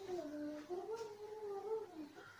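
A drawn-out voice, held for about two seconds with its pitch wavering and stepping up and down.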